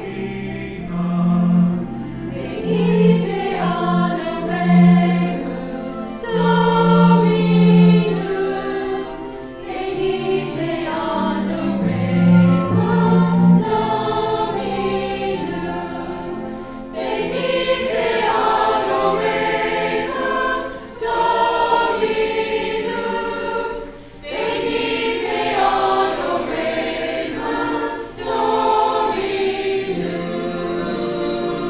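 Mixed choir of men and women singing together, with a short pause between phrases about three quarters of the way through.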